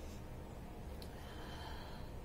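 A woman's quiet breath through the nose during a pause in speaking, with a brief tick about a second in, over a steady low rumble.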